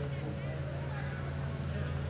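Hoofbeats of a horse moving over soft arena dirt, heard over a steady low hum and indistinct voices.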